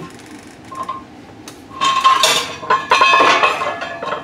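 Steel tube of a welding turntable being drawn down out of its socket under a steel table: metal scraping and clinking against metal with some ringing, loudest from about two seconds in.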